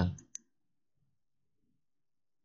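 A single computer mouse click just after the end of a spoken word; the rest is near silence.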